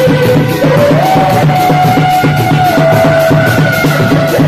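Sundanese reak ensemble playing: fast, steady beating on dogdog frame drums under a loud, high melody of long held notes from a tarompet, which steps up in pitch about a second in and drops back a little near the end.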